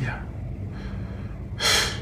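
A person's short, sharp intake of breath about one and a half seconds in, heard over a steady low hum.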